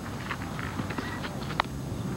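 Faint open-air ambience on a ball field with a few light clicks and knocks, the sharpest about one and a half seconds in.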